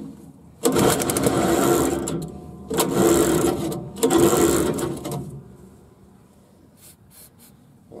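Small gasoline engine on an irrigation wheel-line mover catching on starting fluid: it fires and runs for a second or two, then dies, three times in a row before going quiet.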